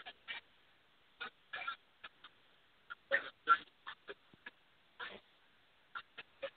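Recorded speech played down a phone line that keeps dropping out: short choppy, garbled fragments with gaps of silence between them, and no words can be made out.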